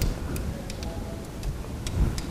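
A saxophone swab's weight and cord sliding down inside the brass body, giving about half a dozen irregular light ticks as it knocks against the tube, over a low handling rumble.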